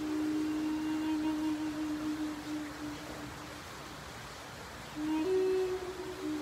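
Flute playing a long, low held note that fades away about three and a half seconds in; after a short pause a new phrase starts about five seconds in, stepping up to a higher note.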